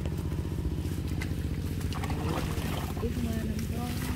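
Small engine-driven water pump running steadily with a low, fast, even beat, pumping floodwater out of a rain-soaked field.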